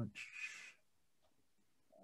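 A brief breathy, raspy sound from a person, lasting about half a second, heard over a video-call microphone, followed by silence.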